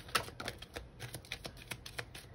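A deck of oracle cards being shuffled in the hands: a quick, irregular run of card flicks and clicks.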